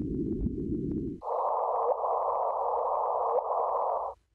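Electronic sound from a sound collage. A low band of rumbling noise switches abruptly, about a second in, to a higher band of hissing noise over a steady tone.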